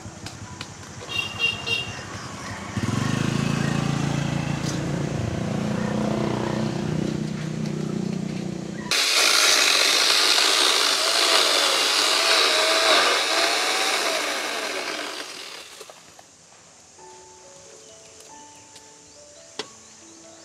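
Corded electric power tool carving into a thick tree trunk: a steady motor hum for several seconds, then, at an abrupt change about nine seconds in, a louder hissing cut with a wavering whine that fades out about sixteen seconds in. A few soft notes follow near the end.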